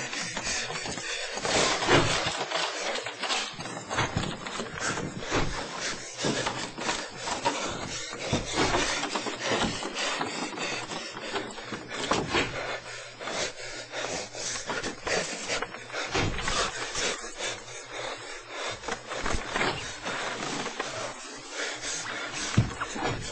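Continuous irregular scraping, rustling and knocking of a handheld camcorder being jostled and swung about.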